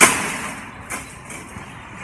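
A sudden loud hiss that fades away over about half a second, followed by a single sharp click about a second in, over a steady low background rumble.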